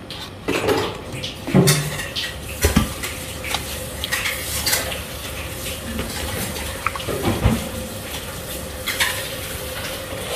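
A plastic rice paddle stirring ears of corn in a large aluminium pot of water, with scattered knocks and clinks against the cobs and the pot.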